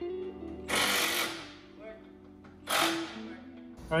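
A power tool run in two short bursts, one about a second in and a briefer one near three seconds, over background music.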